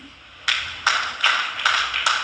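Four hand claps in a steady rhythm, about 0.4 s apart, starting about half a second in.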